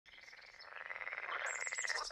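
A frog calling in a fast, even trill that fades in and grows louder, with a few faint high bird chirps near the end.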